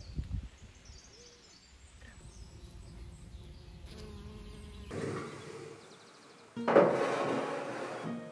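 A bee buzzing around rose blossoms, with faint bird chirps. About two-thirds of the way through, a sudden louder rustling noise starts.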